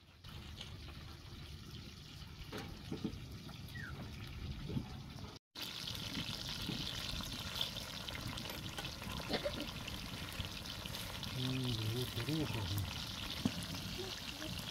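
Tomatoes, onions and green peppers simmering and sizzling in oily liquid in a pan over a wood fire, a steady hiss with small pops, while a spoon stirs them. A short voice is heard near the end.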